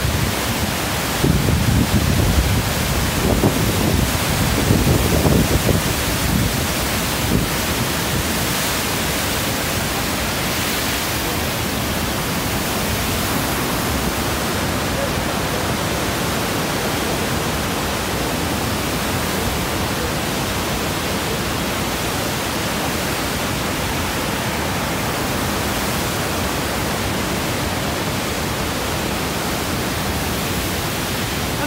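Steady rushing of the flooded Ottawa River's rapids and falls in high flood. Low gusty buffeting on the phone's microphone in roughly the first seven seconds.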